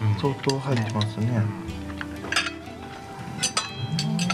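Cutlery clinking against plates as people eat, a few sharp clinks standing out, over background music with held notes; a voice is heard briefly at the start.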